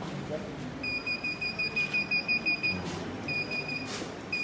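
Alarm buzzer of a cardboard model locker sounding a high, rapidly pulsing beep, about five pulses a second, for about two seconds; it stops briefly and sounds again near the end.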